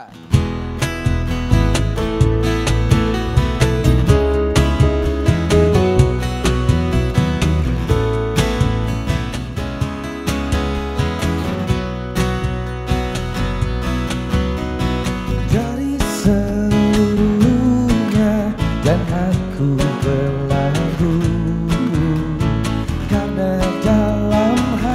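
Live acoustic band playing: acoustic guitars strumming with an electric keyboard, starting right at the beginning. A male voice comes in singing about two-thirds of the way through.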